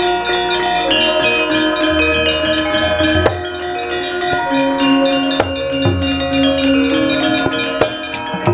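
Javanese gamelan playing: bell-like metallophones struck in a quick, even pulse over held tones, with a deep tone coming in about two seconds in and a few sharp knocks cutting through.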